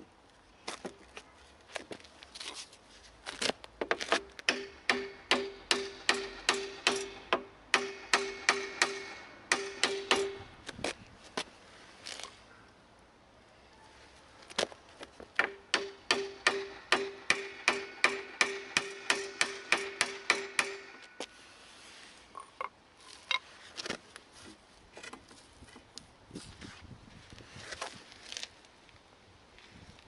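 Hammer blows driven through a wooden plank onto a Vespa PX exhaust, about two a second in two runs with a short pause between. Each strike has a ringing metallic tone. He is knocking the exhaust down to free it from the engine.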